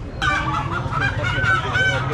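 Caged live chickens squawking loudly all together, starting suddenly just after the start.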